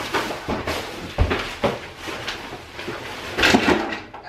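Plastic garbage bags full of toys rustling and crinkling as a person pushes and climbs through them, with scattered knocks and a dull thump a little over a second in; the rustling gets louder near the end.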